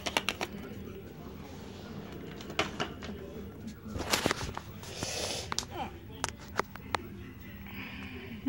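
Scattered light clicks and knocks with some rustling, as of small objects being handled in a small room, over a low steady hum.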